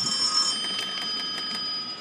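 Telephone ringing: a steady high ringing of several pitches held together, the highest ones dropping out about half a second in.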